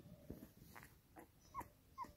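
Faint, short, high squeaks from a newborn puppy, the clearest two near the end, with soft rustle and knocks of the hand stroking it on the blanket.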